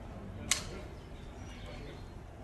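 A single distant blank rifle shot: one short, sharp crack about half a second in, over a low steady rumble.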